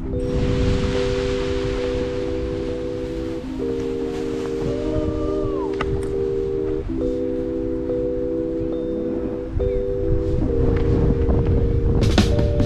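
Background music of long held chords that change about every three to four seconds, over wind rumbling on the microphone.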